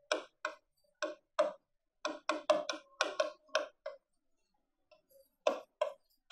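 Pen strokes on a writing board as words are handwritten: a quick, uneven run of short taps and scratches, with a pause of about a second and a half before a couple more near the end.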